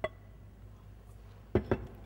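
Glass bowl knocking twice in quick succession on a hard surface about a second and a half in, after a light click at the start.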